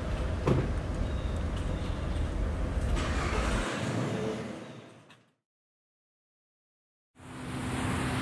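City street ambience, a steady low rumble of traffic with one faint knock, fades out to complete silence about five seconds in. Near the end, water rushing from a boat's wake fades in together with music.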